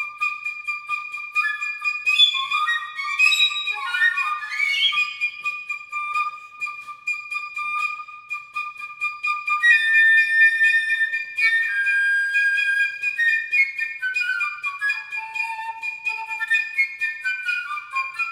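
Two flutes playing a contemporary duet. One holds a long high note while the other moves in stepping lines beneath it, with quick runs in the first few seconds.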